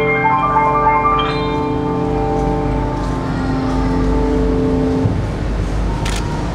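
Yamaha grand piano played solo: a quick run of notes in the first second or so, then a held chord left ringing and slowly fading, over a low steady rumble.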